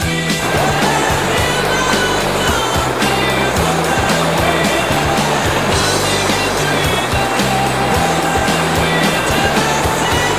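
Rock music in an instrumental passage without singing: a steady, rhythmic bass line under a dense, noisy wash that comes in about half a second in.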